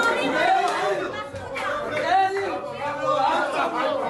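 Several people talking over one another at once: group chatter in a room.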